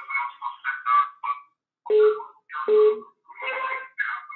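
A caller's voice coming in over a telephone line, thin and tinny, choppy and hard to make out, with short gaps between the broken-up pieces.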